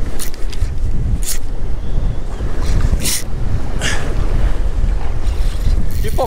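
Wind buffeting the microphone over open sea chop, with a few brief splashes of water.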